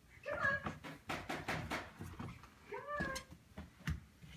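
A baby's short squealing vocalizations, one near the start and another about three seconds in, with soft slaps of her palms on a hardwood floor as she crawls in between.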